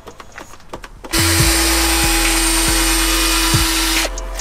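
Cordless drill spinning a foam polishing pad to buff rubbing compound onto a headlight lens. It starts about a second in, comes up to speed, then runs steadily with an even whine.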